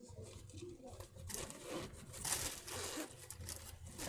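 Rustling and scraping of a small fabric mini backpack being handled and its pockets opened, in several short noisy bursts, loudest about halfway through.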